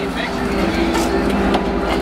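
Sportfishing boat's engines running steadily, a low drone with a steady pitched hum, with a couple of light knocks midway.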